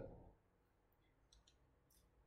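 Near silence with a few faint, short clicks, a pair about a second and a half in and another near the end.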